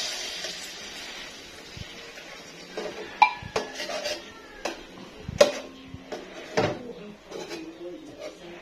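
A metal spoon clinking and scraping against a tin can of sardines and a metal cooking pot as the sardines are spooned into the pot. There are a handful of sharp clinks, a few with a brief ring, the loudest a little after three seconds in and about halfway through.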